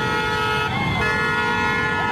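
Motorcycle horns held in one long, steady honk, a lower horn tone cutting out briefly near the middle and coming back.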